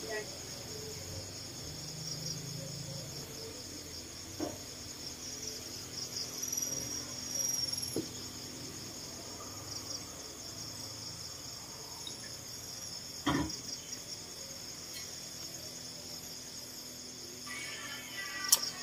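Night-time insect chorus of crickets, a steady high pulsing chirring. A few short knocks sound over it, the loudest about two-thirds of the way through.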